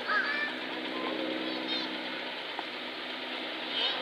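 Steady low engine-like hum under a background murmur of voices, with a few short high chirps about a quarter second in, near the middle and near the end.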